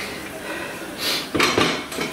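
A spoon stirring and scraping in a frying pan of stew, with a few sharp clinks against the pan about a second and a half in.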